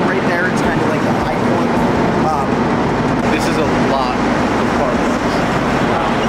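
Voices talking, partly indistinct, over a loud, steady hum and rumble of warehouse machinery.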